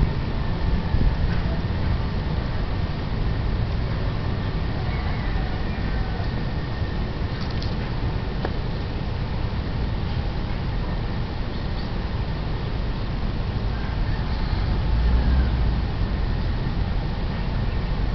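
Steady low rumble of outdoor background noise with no distinct events, swelling briefly about fifteen seconds in.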